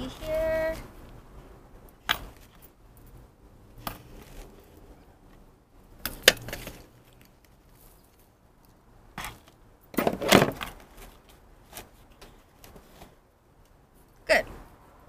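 Small metal hand trowel scraping and scooping potting soil in a galvanized metal bucket and tipping it into a pot: scattered scrapes, clicks and soil rustles, the loudest about six and ten seconds in.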